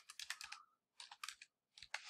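Faint clicking of computer keyboard keys as a short word is typed and entered, in three quick groups of taps.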